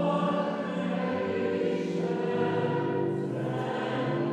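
A choir singing a hymn, the notes held for a second or more before moving on.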